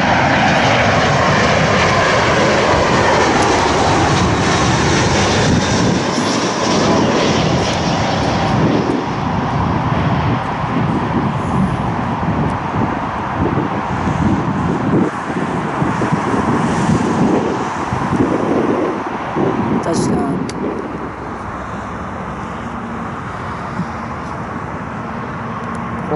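Airbus A320 jet engines passing close overhead on short final. The sound is loud, with a whine dropping in pitch over the first few seconds as the aircraft goes by, then a long rushing rumble that dies down about twenty seconds in.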